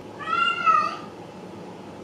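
A cat meowing once: a single call of under a second that rises and then falls in pitch.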